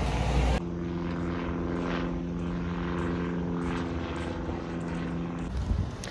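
Steady hum of an aircraft propeller holding one even pitch for about five seconds. It cuts in abruptly about half a second in, replacing low street rumble, and ends shortly before the close.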